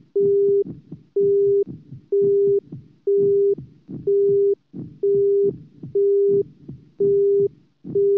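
Heart-monitor beep sound effect: a single steady electronic tone beeping about once a second, each beep about half a second long, over low pulsing sounds underneath.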